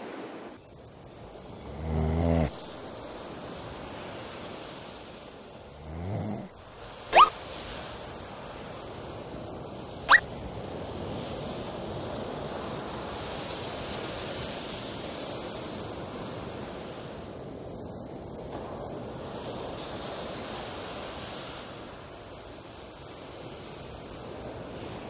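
Sea surf washing steadily on a beach. Over it come a loud low pitched sound about two seconds in, a shorter one rising in pitch near six seconds, and two brief sharp sounds shooting up in pitch at about seven and ten seconds.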